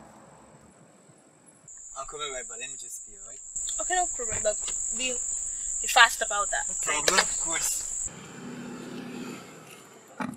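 Two people laughing and giggling in a car, over a steady high-pitched insect chirr. The chirr cuts in about two seconds in and cuts off abruptly about eight seconds in.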